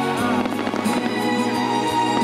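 Fireworks bursting in the sky, several sharp bangs and crackles over music that plays steadily throughout.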